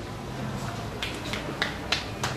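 A few scattered, hesitant hand claps from the audience: about five sharp single claps spread over the second half, over faint room hum.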